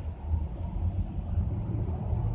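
Low steady rumble inside a car's cabin, the sound of the car's engine idling.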